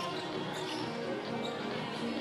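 Basketball game court sound: a ball being dribbled on the hardwood floor, over a steady background of arena music and crowd.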